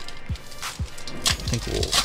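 Background music with a steady beat, about two beats a second, under the crinkling and tearing of a foil Pokémon booster pack wrapper being pulled open, loudest from just before a second in until near the end.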